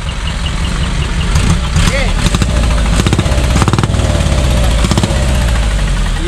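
Truck engine running through a newly fitted split exhaust manifold. It is a low, rapidly pulsing rumble from the exhaust that swells louder about two and a half seconds in, holds for about three seconds, then eases back slightly near the end.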